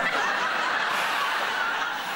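Studio audience laughing together, a steady wave of many voices that begins at once and eases off near the end.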